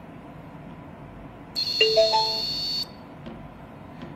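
Electronic prompt tone from a homemade Bluetooth speaker's receiver module, played as the phone connects: about one and a half seconds in, a high steady tone lasting just over a second with three quick rising beeps beneath it.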